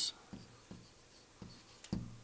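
Faint taps and short strokes of a pen on an interactive whiteboard as a number is handwritten, four or so soft marks spread over two seconds.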